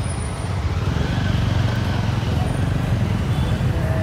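Steady low rumble of road traffic outside a busy entrance.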